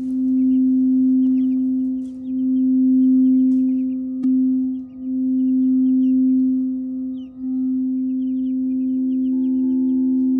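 A large singing bowl played by rubbing a wooden mallet around its rim: one steady low hum that swells and fades every two to three seconds, with a light click about four seconds in. Near the end a second, higher-pitched bowl joins in. Chicks peep faintly throughout.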